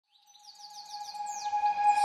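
Birds chirping, a quick run of short high notes each falling in pitch, fading in over a steady held tone.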